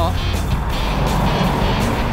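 Background music over the steady low rumble of an idling BMW motorcycle engine and traffic noise.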